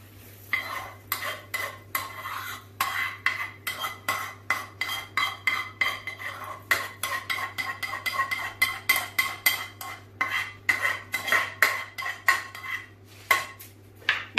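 A metal spoon scraping and knocking rice out of a non-stick frying pan into a wide, shallow clay cazuela, in quick repeated strokes of about two to three a second, each with a short metallic ring.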